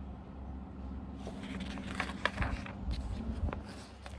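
Paper rustling and crackling as a picture book's page is turned, starting about a second in, with a couple of low handling bumps.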